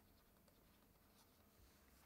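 Near silence, with faint scratching and ticks of a stylus writing on a tablet screen.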